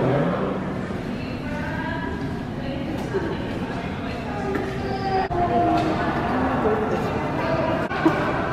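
Indistinct voices of several people talking in a museum hall, with no one voice clear. The sound dips briefly a little past five seconds in.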